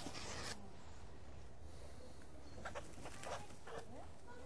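A little egret moving and flapping about in dry leaf litter: a brief rustle at the start, then a few short scratchy sounds in the second half.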